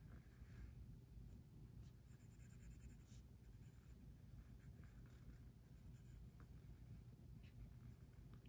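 Faint scratching of an Apple Pencil tip rubbing over an iPad's glass screen in short, scattered strokes with a few light taps, over a low steady room hum.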